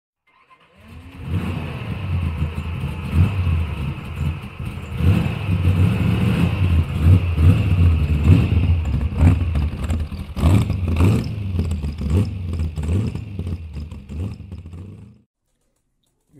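A car engine starting with a rising note about a second in, then running and revving. It cuts off suddenly shortly before the end.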